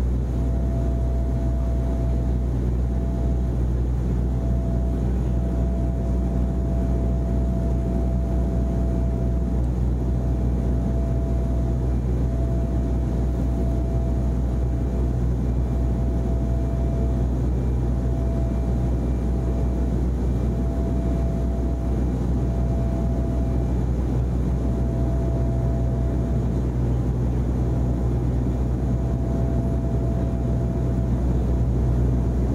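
Steady low drone of helicopter engines and rotors, with a faint high tone breaking on and off every second or two over it.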